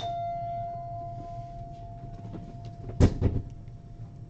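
A single bell-like chime that rings on one steady pitch and fades away over about three seconds. About three seconds in come a loud thump and a few quick knocks, the loudest part.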